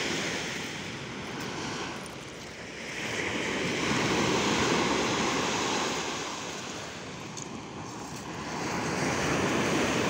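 Sea surf breaking on a sandy beach, a steady rush of water that swells and eases slowly as the waves come in, loudest about four seconds in and again near the end.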